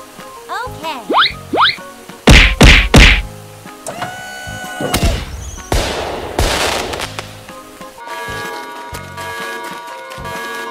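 Cartoon fireworks sound effects: short rising whistles of rockets going up, then three loud bangs in quick succession and a long crackling hiss. Music begins about eight seconds in.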